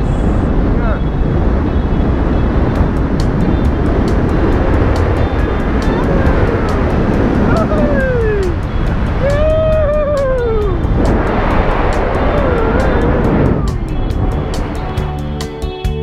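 Heavy wind rushing over the microphone as a tandem parachute canopy swings through turns, with several drawn-out whoops rising and falling in pitch in the middle. Background music with a steady beat sits under the wind and comes to the fore near the end.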